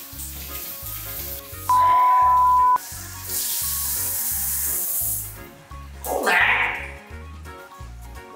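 Overhead rain shower head spraying water in a hiss for about two seconds, over background music with a steady beat. Just before the water, a loud one-second censor bleep; about a second after it stops, a short sound falling in pitch.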